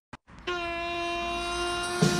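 A single steady horn-like tone held at one unchanging pitch, starting about half a second in after a short silence.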